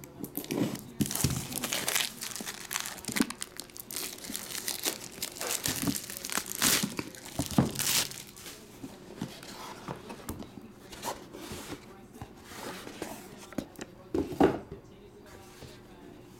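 Plastic shrink-wrap being slit with a utility knife and torn off a cardboard box, crackling and tearing densely for the first half. It gives way to quieter handling of the box, with one louder knock near the end.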